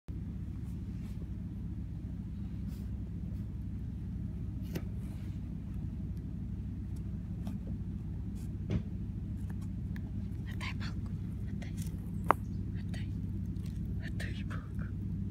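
A Pembroke Welsh corgi puppy chewing a stick, with scattered small clicks and cracks of wood in its teeth and one sharper crack near the end, over a steady low rumble.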